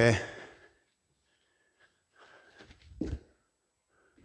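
A man breathing hard from exertion, then a dull thud about three seconds in as a bare foot lands and sticks on a wooden floor.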